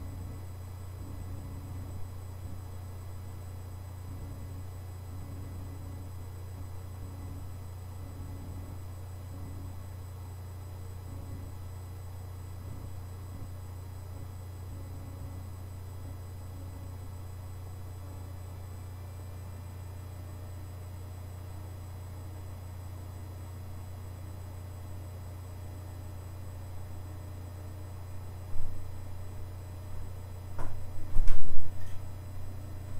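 A steady low hum with a faint hiss in an empty bathroom, unchanging throughout. Near the end a brief, louder sudden sound breaks in.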